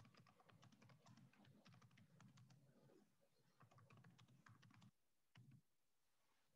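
Faint typing on a computer keyboard: a run of light key clicks that pauses briefly about three seconds in and stops near the end.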